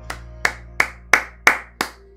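Six loud hand claps at an even pace of about three a second, over faint music.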